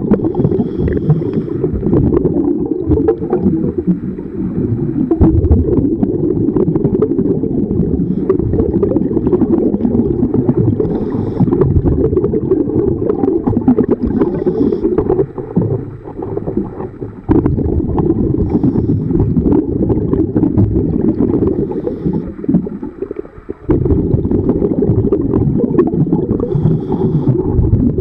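Underwater rumble of water and handling noise on a diver's camera housing, with faint short hisses every few seconds. The rumble dips briefly twice in the second half.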